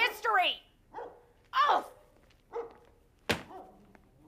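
A dog barking a few times off and on, each bark short and falling in pitch, with one sharp knock about three seconds in.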